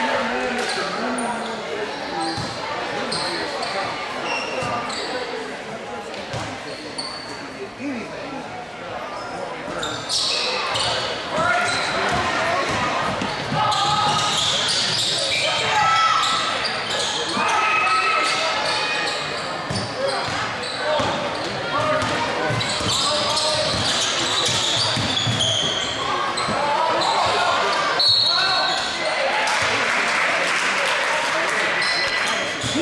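Basketball game sound in a large echoing gym: crowd voices and shouts, a basketball bouncing on the hardwood, and many short sneaker squeaks. It grows louder and busier about a third of the way in, once play starts.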